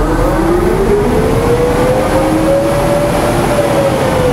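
Bourgault 7000 air seeder's hydraulically driven fan spinning up: a noisy rush of air with a whine that rises in pitch over about three seconds, then levels off and eases slightly near the end.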